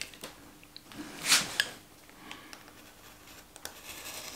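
Snap-off utility knife blade cutting through thick, firm sole-type leather: one short scraping slice about a second in, with a few faint small clicks around it.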